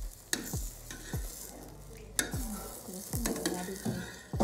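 Metal spoon scraping and scooping a fried egg around a metal frying pan, with a light sizzle from the hot pan. There are several short scrapes and knocks, the sharpest about two seconds in.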